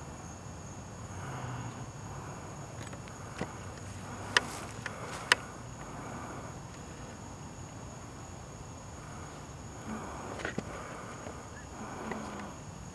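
Quiet night-time outdoor ambience: a steady high drone of night insects, with a few sharp clicks from handling the camera, about three in the first half and one near the end.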